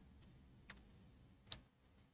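Near silence with two faint, sharp clicks, about three-quarters of a second apart: a computer mouse being clicked.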